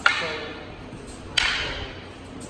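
Two sharp clacks of wooden jo staffs striking each other, one right at the start and one about a second and a half in, each ringing briefly in the hall.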